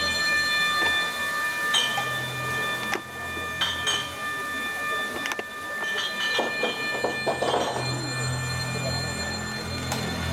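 Electronic soundtrack of a projection-mapping show over loudspeakers: sustained high, screechy drones over a low hum, broken by short glitchy crackles every couple of seconds and a denser noisy swell about three-quarters of the way through.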